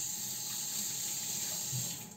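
Steady rushing hiss of running water, starting abruptly and cutting off abruptly two seconds later.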